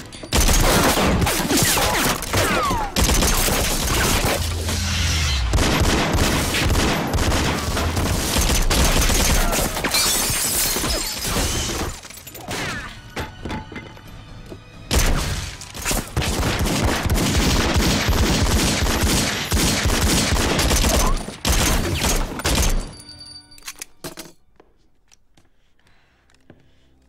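Sustained bursts of automatic gunfire in a film shootout, with shattering and splintering debris from the hits, over action music. There are a couple of short lulls in the middle, and the firing dies away near the end.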